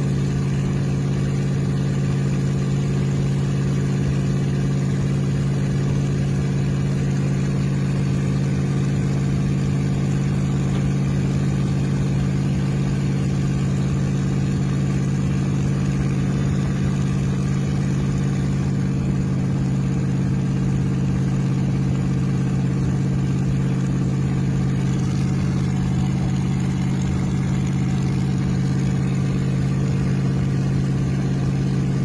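A rat rod's engine and exhaust drone steadily at a constant highway cruise, heard from inside the cab. The pitch holds even throughout, with no revving or gear changes.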